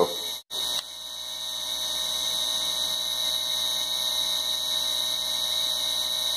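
Razor E300 scooter's 24-volt brushed DC motor running at its top speed, about 3,500 RPM: a steady, pretty quiet hum with a high whine. There is a brief cut about half a second in, after which the sound builds slightly.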